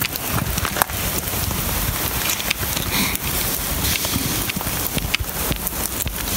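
Steady rain pattering, with many small sharp drop taps, and wind rumbling on the microphone.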